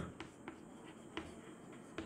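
Chalk on a blackboard while writing: faint scratches with a few light taps of the chalk.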